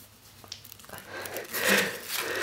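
Thin protective sheet being lifted and pulled off a new laptop's keyboard: a brief papery rustle about one and a half seconds in, after a faint click.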